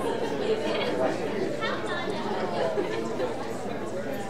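Several people chattering at once, their voices overlapping into a steady hubbub with no single speaker standing out.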